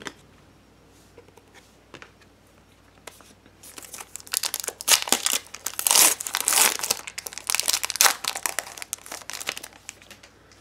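Foil wrapper of a Bowman Sterling baseball card pack being torn open and crinkled by hand. It starts about three and a half seconds in, after a few faint handling clicks, and is dense and crackly up to the end.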